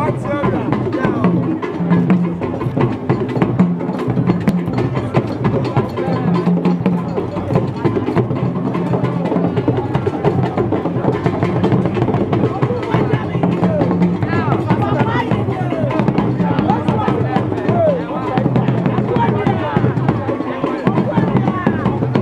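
Drums and percussion playing amid a crowd of overlapping voices.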